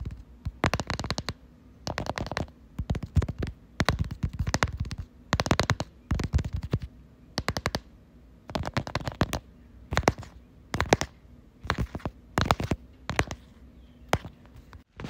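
Rapid ASMR tapping sounds in quick bursts of several crisp clicks each, about a dozen bursts with short pauses between.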